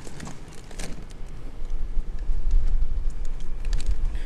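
Wind rumbling on the microphone, much stronger from about halfway through, with light rustling and clicks of a fish being set down on bagged ice in a plastic cooler.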